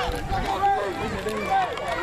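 Indistinct chatter from several spectators talking over one another, voices overlapping.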